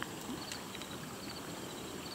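Quiet outdoor background with an insect chirping faintly, short high chirps repeating about every half second.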